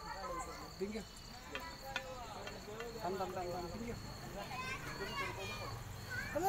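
Crickets trilling in a steady high note through the night air, under faint voices and a few light clicks.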